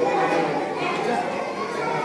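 A man speaking into a microphone over a public-address system in a large hall, with children's chatter in the background.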